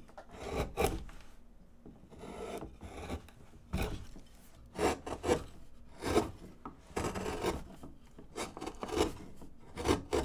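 Hand wood-carving gouge paring chips from a basswood blank: a string of short, irregular scraping cuts, about one every half second to a second.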